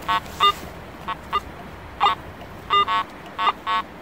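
Garrett AT Pro metal detector giving its target tone: short buzzy beeps, mostly in pairs, as the coil is swept back and forth over a buried target. It is a jumpy signal, not a clean, steady one.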